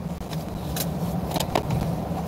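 Steady low hum of a car idling, heard from inside the cabin, with a few small clicks and rustles of something handled near the driver's seat.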